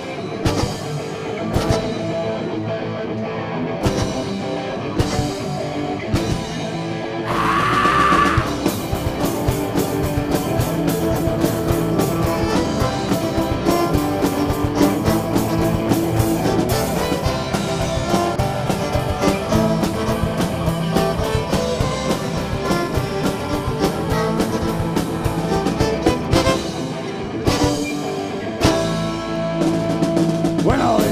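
A live folk-rock band plays the instrumental intro of a song on drum kit, guitars and fiddle. It starts with spaced drum hits and guitar, and the full band comes in at a driving beat after about seven seconds.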